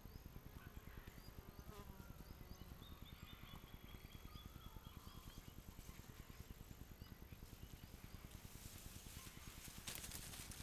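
Near silence: faint bushland ambience with a few faint high chirps and a short high trill in the first half, and faint crackling that grows near the end.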